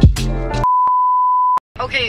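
Music with a beat cuts off into a loud, steady, high electronic bleep about a second long, a single tone of the kind used as a censor bleep. After a short break a woman's voice starts near the end.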